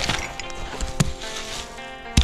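A small hoe-and-fork hand digging tool striking into soil: two sharp chops about a second apart, over steady background music.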